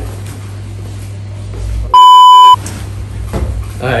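A loud, steady electronic bleep about two seconds in, lasting about half a second, of the kind edited in to censor a word: all other sound drops out while it plays. Around it a low steady hum of room noise.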